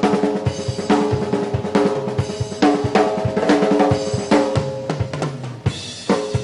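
Live band playing an instrumental passage: the drum kit keeps a steady beat of a little over two strikes a second under held chords.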